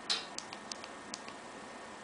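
Light clicks of an iPhone's side volume button pressed repeatedly: about six quick ticks in the first second and a half, then only faint room tone.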